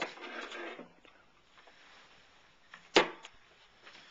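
Handling noise as a cordless drill is picked up: a rustle at first, then a single sharp knock about three seconds in, with a smaller click just after. The drill's motor is not run.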